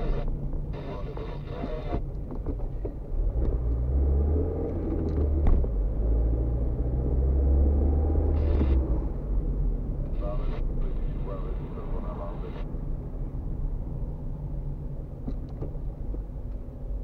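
Car driving through town heard from inside the cabin: steady engine and tyre rumble that swells and deepens between about four and nine seconds in.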